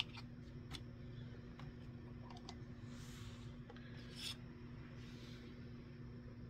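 Faint handling sounds at the finish-line gate of a Hot Wheels drag-race timer: a few light clicks and taps, and two soft rubbing sweeps around the middle and near the end, over a steady low electrical hum.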